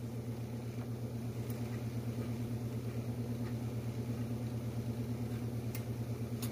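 Steady low mechanical hum of a motor or appliance running, with a slight fast pulse, and a couple of faint clicks.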